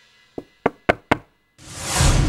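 Four quick knocks on a door, about four a second, the first one softer. Near the end a swell of background music rises in.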